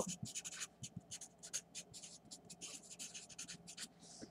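Marker pen writing on paper: a quick, irregular run of faint, short scratchy strokes.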